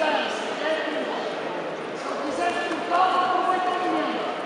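Voices shouting and calling out in a large, echoing sports hall, with one louder held shout near the end. A few short thuds are mixed in.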